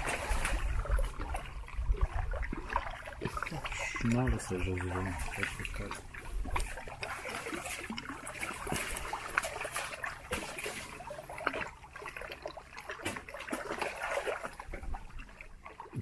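Small sea waves lapping and trickling against the rocks, with scattered close clicks and rustles of hands handling gauze and a first-aid kit. A short, held vocal sound, like a hum or groan, comes about four seconds in.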